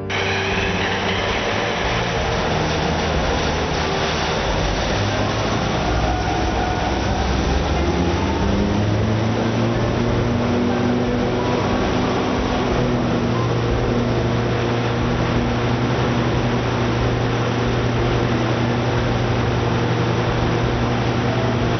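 Coates CSRV spherical-rotary-valve industrial engine generator running on natural gas under full load: a steady, loud engine drone with a low hum that grows stronger about nine seconds in.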